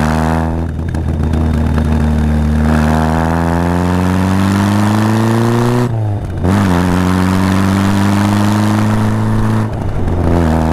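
Austin-Healey Bugeye Sprite's 1275 cc A-series four-cylinder engine pulling the car on the road. The revs climb steadily, drop at gear changes about half a second in and about six seconds in, then climb again, with a brief dip near the end.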